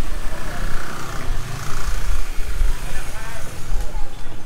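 Busy market lane: people's voices all around and a motor scooter's engine running close by.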